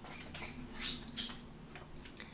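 Faint rustling and light clicks of walnut pieces being handled and sprinkled by hand onto a dish of oily sun-dried tomatoes, in a few short scratchy bursts.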